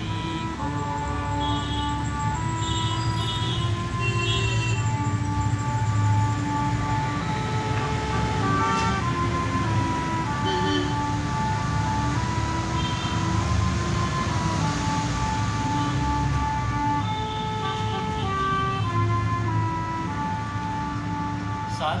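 Harmonium playing an instrumental melody of held notes that step from pitch to pitch over a lower sustained note.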